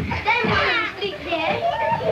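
Children's excited voices, shouting and calling out as they play boisterously.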